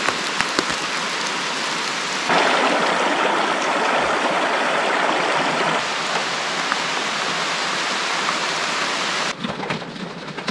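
Steady heavy rain falling on trees and on a parked car, in several cut-together takes that get louder about two seconds in and change again around six seconds. Near the end, heard from inside the car, separate drops tap on the roof and windows.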